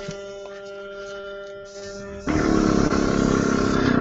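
Marker airbrush (eBrush) air supply humming steadily at low pressure. About two seconds in, a loud, steady rush of air starts as the air is turned up and blows through the marker.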